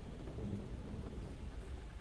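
Sliding blackboard panels being pushed up in their frame, giving a faint, steady low rumble.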